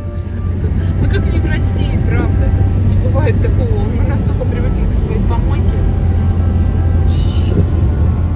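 Car cabin noise on the move: a steady low rumble of engine and tyres on the road.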